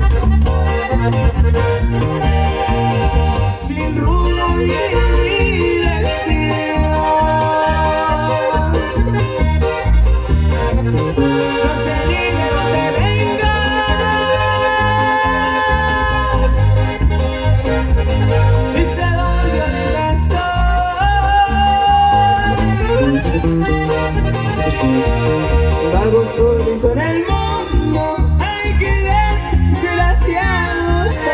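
Live band music led by an accordion, over bass and guitar with a steady beat.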